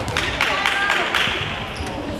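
Girls' voices talking and calling out in a large indoor sports hall, with a few short sharp knocks in the first second.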